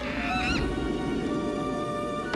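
Orchestral film score playing, with a short wavering, high cry about half a second in.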